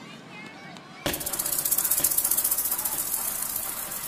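Opening of a gqom dance track: faint sampled voices, then about a second in a loud hissing noise layer cuts in suddenly, pulsing rapidly several times a second.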